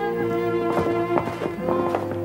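Orchestral film score holding sustained string chords, with a few footsteps or knocks about two-thirds of a second, a second and almost two seconds in.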